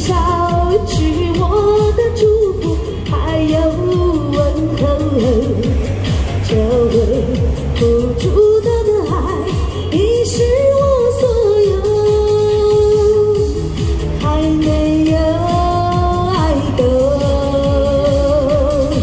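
A woman sings a Chinese pop ballad through a handheld microphone and small amplifier over a backing track with a steady bass beat, her voice wavering with vibrato on long held notes.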